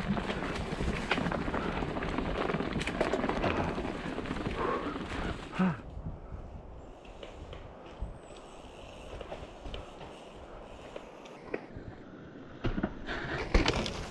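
Mountain bike riding over a leaf-covered dirt trail: a steady noisy rush with scattered knocks. It cuts off suddenly about six seconds in to a much quieter stretch with a few light knocks, then grows louder again near the end as a bike rolls onto rock ledges.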